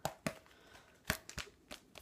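Handling noise from a duct-taped foam tomahawk being moved about close to the microphone: about five light clicks and crinkles spread through the quiet.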